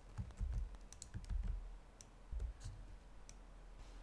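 Computer keyboard being typed on: an irregular scattering of faint key clicks with soft low thuds, thinning out in the last second.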